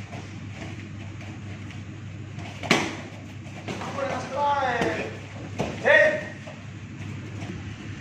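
A sparring strike landing on protective gear with one sharp smack about three seconds in, followed by drawn-out shouts from onlookers or fighters, one falling in pitch. A steady low hum runs underneath.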